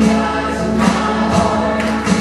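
Live worship band playing a praise song: electric guitars, bass and a drum kit with cymbal hits about every half second, with singing voices over the top.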